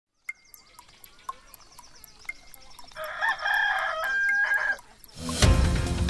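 A clock ticking about four times a second, joined about three seconds in by a rooster crowing for nearly two seconds. Just after five seconds, loud theme music with a heavy bass comes in.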